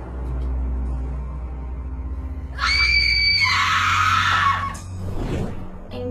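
Ominous horror background music with a low drone. About two and a half seconds in, a young woman lets out a loud, high-pitched terrified scream lasting about two seconds.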